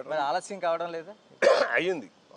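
A man talking in Telugu, broken about one and a half seconds in by a short, loud cough.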